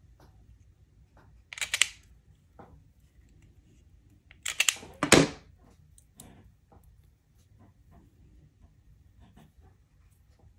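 Automatic wire stripper squeezed twice on thin wire ends, each squeeze a short clack as the jaws grip and pull the insulation off. The two strokes come about three seconds apart, the second louder, with faint handling clicks between.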